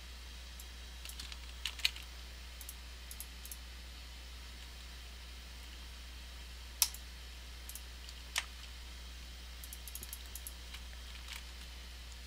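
Scattered computer keystrokes and mouse clicks: a few light taps, then single sharp clicks and another short run of keystrokes, over a steady low hum.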